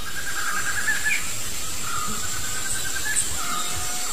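Tropical forest ambience: a steady hiss with a few thin, high, drawn-out wildlife calls that come and go above it.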